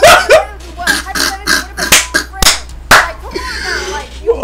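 A man laughing hard, with a few sharp smacks about halfway through, like hands clapping or slapping.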